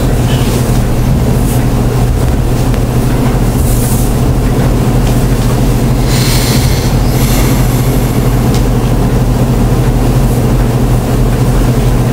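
Steady low electrical hum with hiss over it, unchanging, with a few faint brief rustles or murmurs now and then.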